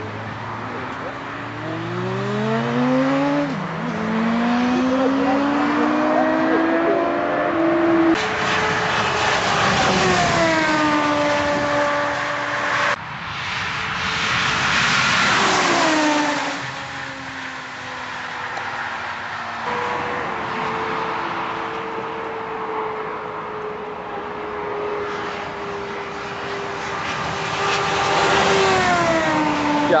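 A turbocharged VW Golf VR6 (six-cylinder) and a Honda Fireblade 900 four-cylinder sport bike racing at full throttle. Engine pitch climbs through the gears, dropping at each shift, and later falls sharply as the vehicles pass by, about halfway through and again near the end.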